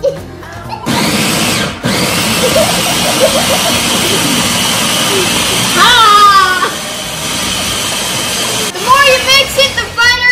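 Electric press-top food chopper running, pureeing tomatoes, jalapeño, cilantro, onion and garlic into salsa. It starts about a second in, cuts out for a moment just before two seconds, then runs steadily until it stops near the end, with children's shouts over it.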